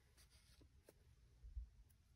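Near silence: faint rustle and light clicks of paper being handled on a desk, with a soft low bump about one and a half seconds in.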